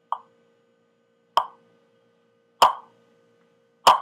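Four sharp clicks at a perfectly steady rate, about one every second and a quarter.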